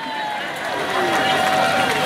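Hubbub of a large outdoor crowd reacting, with faint thin steady tones, the longer one held through about the second half.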